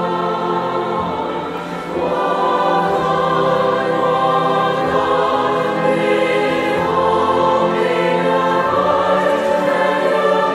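A large virtual choir of about 300 voices singing a slow, sustained hymn-like ballad with orchestral accompaniment of woodwinds and brass. The music swells louder about two seconds in.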